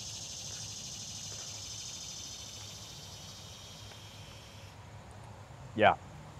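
Steady, high-pitched chorus of insects chirring, which cuts off suddenly about three-quarters of the way through.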